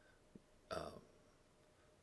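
Near silence, broken under a second in by a man's brief hesitation sound, 'uh'.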